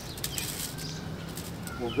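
Granular 10-10-10 fertilizer tossed by hand onto loose soil in a galvanized raised bed, a brief run of light ticks as the granules land, with faint bird chirps.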